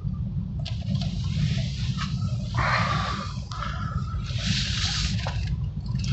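Cabin noise of a BMW i3 electric car rolling slowly on concrete: a steady low rumble with no engine note, and irregular surges of rushing hiss from about a second in.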